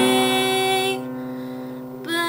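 A woman's voice holds a sung note over an acoustic guitar. About a second in the voice stops, and the guitar goes on ringing more quietly.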